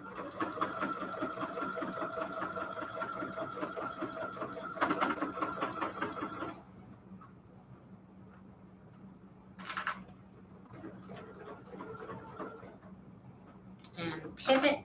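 Janome Jubilant sewing machine stitching bias tape onto a quilted mat at a steady fast pace, then stopping after about six and a half seconds. A few seconds later there is a short sharp sound, then a quieter, brief run of the machine near the end.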